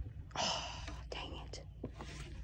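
A person whispering softly, two short breathy phrases, over a low steady rumble.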